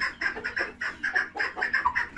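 Poultry calling in a fast run of short, high chirps, about six a second.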